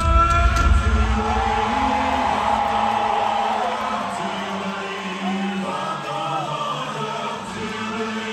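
Rock band playing live in an amphitheatre: the full band with heavy drums drops out about a second in, leaving long held, choir-like sung notes over a quieter backing, twice swelling and fading.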